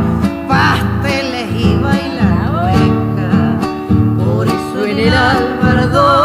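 Argentine folk music, a cueca cuyana by a vocal-and-guitar duo: acoustic guitars strummed and plucked, with sung lines wavering over them.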